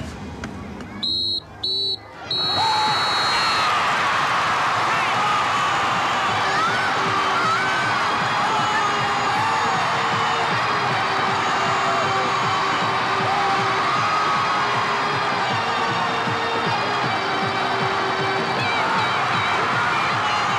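A referee's whistle gives three blasts, two short and one long, signalling full time. Then a crowd of spectators and children cheers and shouts loudly, with music underneath.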